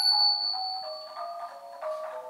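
Khong wong yai, the Thai large circle of tuned bossed gongs, played solo with beaters: a few ringing struck notes stepping downward. A stroke of the ching (small cup cymbals) at the start leaves a high tone ringing for about two seconds.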